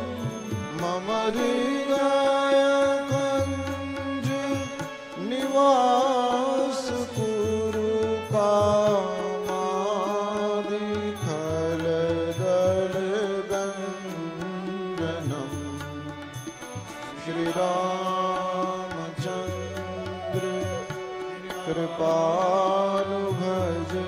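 A man singing a slow devotional melody in long, held, ornamented notes over sustained instrumental accompaniment, with a low drum beat repeating every second or two.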